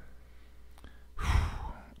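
A man sighs once, a short breathy exhale just over a second in, after a quiet pause.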